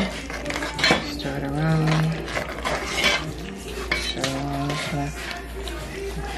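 A spoon stirring thick cornmeal and coconut milk in a pot, scraping round the pot and knocking against it now and then with a few sharp clicks. It is being stirred steadily to keep lumps from forming.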